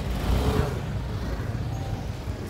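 City street traffic: car engines running in a low rumble, swelling louder about half a second in as a vehicle passes close by.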